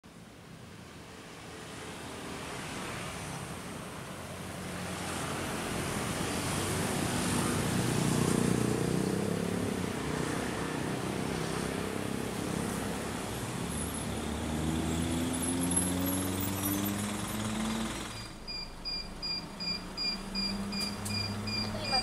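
Road traffic: engines of passing motorcycles and cars, swelling to a peak about 8 s in, with engine pitch climbing as vehicles pull away near 14–18 s. After a sudden change at about 18 s, a steady electronic beep repeats about two to three times a second, heard inside a city bus.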